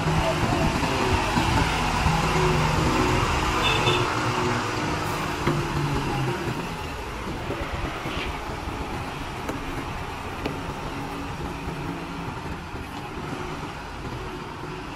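Diesel engine of a loaded Tata multi-axle truck running as the truck creeps across a fuel station forecourt. The sound fades over the second half as the truck moves away.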